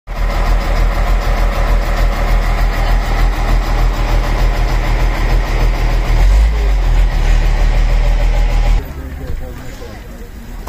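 Fire truck's engine idling: a loud, steady low rumble that cuts off abruptly near the end.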